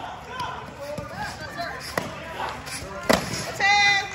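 Foam sparring swords striking in a bout: sharp thwacks about one, two and three seconds in, the third the loudest, followed near the end by a short high-pitched yell, over background chatter in a large hall.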